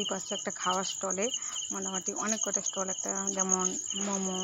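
A person's voice with several long held notes over a steady, high chirping trill like crickets.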